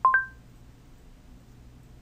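Android phone's Google voice-input chime: one short beep of two tones sounding together, marking the end of listening after a spoken command. After it only a faint low hum remains.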